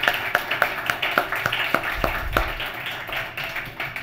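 Audience applauding: a dense patter of hand claps that thins out a little near the end.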